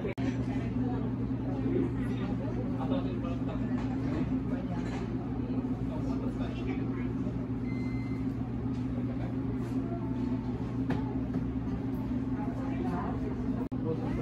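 Café ambience: a steady low hum with the murmur of other people talking in the background.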